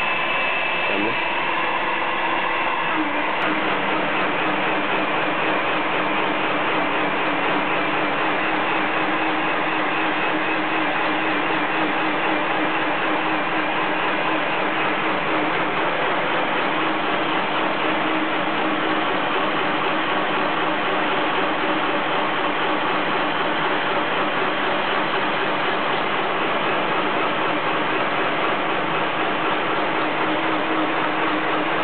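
An automatic broom-head drilling and tufting machine running steadily, a fast, dense mechanical clatter of its moving heads and fixture.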